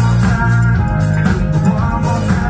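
Live band music: electric guitar over a drum kit and bass, playing steadily with a regular beat.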